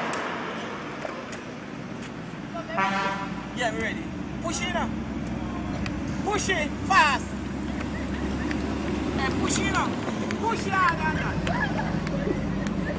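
Several short voice calls and shouts over a steady low engine drone, with a brief pitched toot about three seconds in.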